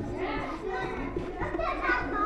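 Children's voices in the background: indistinct chatter and play, with no single voice standing out.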